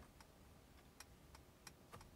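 Faint, even ticking of a Mercedes-AMG G63's turn-signal indicator, about three ticks a second, with the signal switched on.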